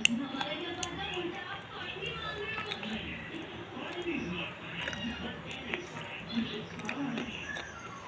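Close-up chewing and mouth sounds of someone eating a snack, with voice sounds and faint music behind them.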